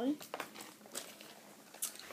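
Rustling and crinkling with a few light clicks as items are handled and pulled out of a bag.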